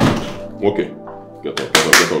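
Two loud hits landing on a person lying on a sofa, one right at the start and another near the end, with short voice sounds between them, over soft background music.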